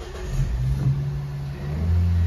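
A 2012 Nissan Juke 1.6 four-cylinder petrol engine being push-button started. It fires up about half a second in and runs on with a steady low hum that drops in pitch and grows louder near the end as it settles toward idle.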